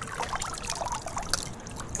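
Swimming-pool water splashing and trickling in small irregular splashes, with water running off a wet arm back into the pool.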